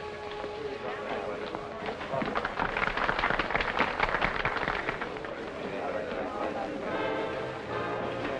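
Dance band music in a busy nightclub, with the crowd's chatter; the music thins out a couple of seconds in and a louder, dense crackle of crowd noise follows in the middle.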